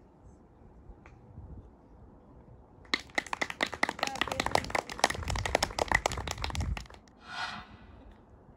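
A small group of spectators clapping after a putt on the green, starting about three seconds in and stopping about four seconds later.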